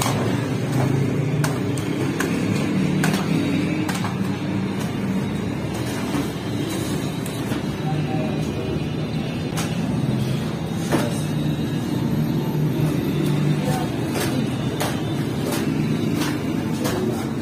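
Bakery workroom noise: a steady low rumble with scattered sharp knocks and clatters from handling dough and bread.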